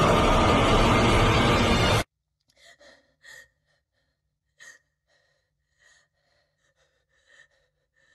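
Loud, dense horror-film score that cuts off abruptly about two seconds in. After it, in the quiet, a frightened woman gives a string of short, faint gasping breaths.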